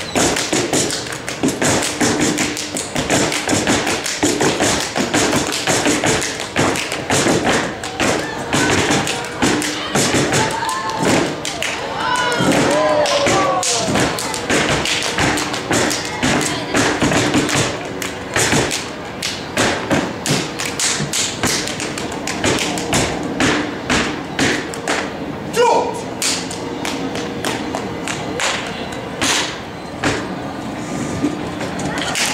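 Step team stepping: a dense, fast rhythm of stomps, hand claps and body slaps on a stage floor, with short shouts of voice over it in places.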